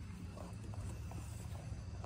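Low steady rumble of a semi-truck's diesel engine idling, with a few faint clicks and taps.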